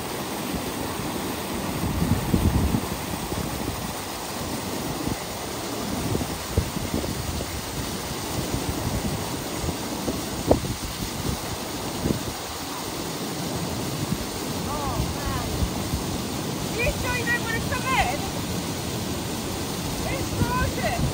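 Small waterfall pouring into a river pool: a steady rush of falling water, with low gusts of wind on the microphone. Brief rising and falling pitched sounds come about three seconds before the end.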